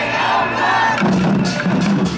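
Loud worship music with a crowd of voices singing and shouting along together.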